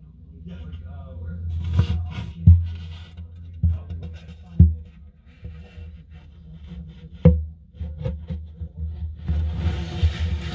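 An inspection camera on its cable knocking and rubbing against the inside of a hollow acoustic guitar body, giving a series of sharp knocks over a low steady hum.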